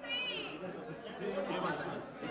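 Indistinct chatter of several voices talking at once in a large hall.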